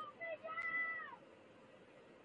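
A person's faint, distant shouted call: two short syllables, then a long held note that drops in pitch and stops a little over a second in.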